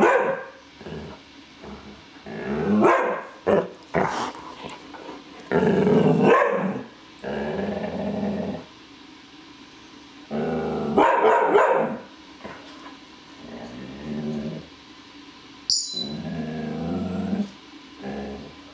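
Afghan Hound puppy giving territorial barks and drawn-out, howling bays with her head raised, in bouts of one to two seconds separated by short pauses. A short sharp click sounds near the end.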